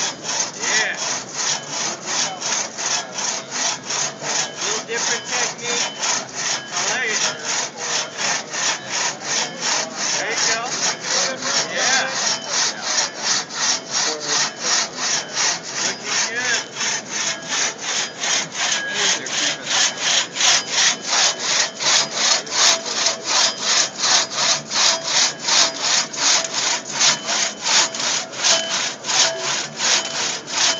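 Two-man crosscut saw cutting through a log, pulled back and forth by two sawyers in a fast, even rhythm of about two to three strokes a second. The strokes grow louder past the middle as the cut deepens.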